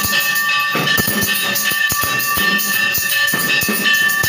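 Music of drums beating fast and unevenly over a steady high ringing tone.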